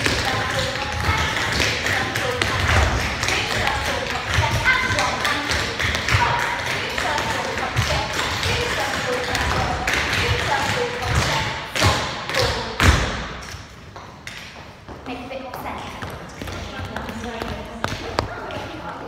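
Dancers' shoes stepping, turning and landing with repeated thuds and taps on a hard studio floor, under indistinct voices in the room. A louder thump comes about 13 seconds in, and the sound is quieter after it.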